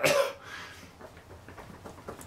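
A man coughs once, sharply, at a strong stink. The cough is loudest at the very start and dies away quickly into faint sound.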